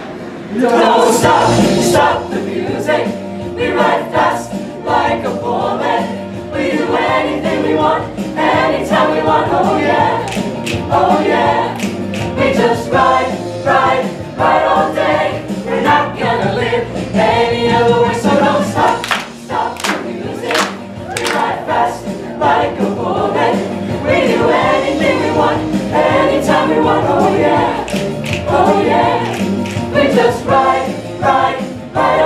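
Mixed-voice show choir singing an up-tempo number together, with sharp percussive hits through it.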